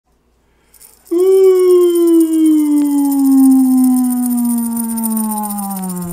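One long howl starting about a second in, falling slowly and steadily in pitch for over five seconds, over a steady high crackling hiss.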